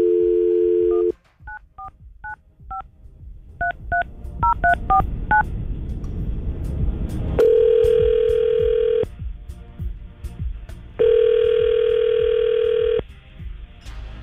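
Telephone call being placed: a brief dial tone, then about ten touch-tone keypresses dialing a number, then the line ringing twice, each ring about two seconds long.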